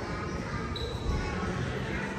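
Footsteps thudding on a polished stone lobby floor as the person holding the camera walks, with faint voices from people in the hall behind.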